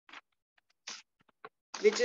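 A pause in a woman's speech with a few short, faint scratchy noises, then she begins speaking again near the end.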